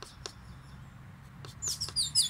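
A songbird singing: a rapid series of short high notes, each sliding downward, beginning about one and a half seconds in after a few faint clicks.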